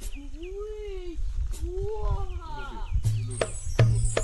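Two long goat bleats, each about a second, rising and then falling in pitch, with faint quick high chirps behind the first. Music begins about three seconds in.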